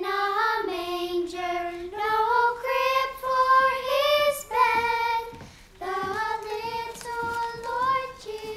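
A young girl singing alone in slow, held notes that step up and down, with a short break just after halfway.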